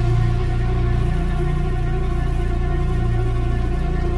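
Heavy, droning industrial doom music played on custom-built machine instruments. A loud, sustained low drone carries steady tones stacked above it, and the bass swells and fades about once a second.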